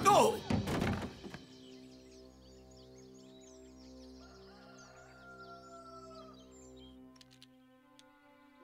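A few heavy thuds with a short falling cry at the very start. Then quiet, slow film-score music of long held notes, with birds chirping over it and two faint clicks near the end.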